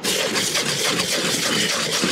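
A hand brush scrubbing quickly over a metal roof seam, a dense run of scratching that starts suddenly and stops just after the end. The brushing roughs up the old silicone-coated surface so that new sealant will stick.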